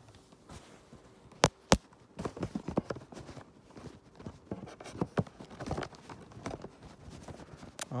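Cardboard slipcover being forced back over a DVD box set: rubbing, scraping and knocking of cardboard on the case, with two sharp knocks about a second and a half in and busier scraping and clicking after that.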